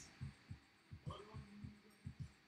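Near silence: quiet room tone with a few faint, short low thumps.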